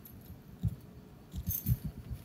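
A cat playing with a wand toy: several soft low thumps as it bats and shifts on the tile floor, with a light metallic jingle near the end.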